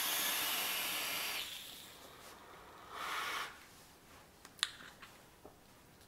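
A long draw through a Digiflavor Pilgrim GTA/RDTA rebuildable vape atomizer: an airy hiss of air pulled through its airflow and over the coils for about a second and a half, fading out. A second, shorter breath follows about three seconds in, then a faint click.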